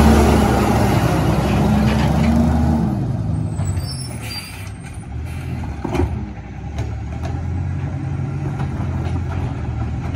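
Heil Rapid Rail side-loader garbage truck's CNG engine revving as it drives past close by, its pitch rising and falling, then fading as it pulls ahead and stops, with a faint high brake squeal and a short sharp air-brake burst about six seconds in. The engine then runs on steadily at the stop.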